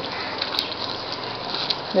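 Papaya halva mixture of milk and sugar bubbling and spluttering in a kadai on a high gas flame, with a steady hiss and two small pops.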